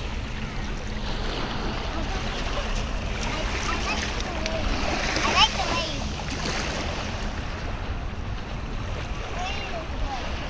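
Small waves lapping and washing over sand in shallow water, with wind rumbling on the microphone. A short, high-pitched voice cry rises about halfway through and is the loudest moment.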